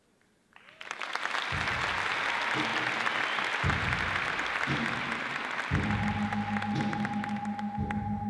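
Audience applause breaks out about half a second in and keeps going. Under it a music track starts, with a deep beat about once a second that gives way to held low notes and a steady high tone near the end.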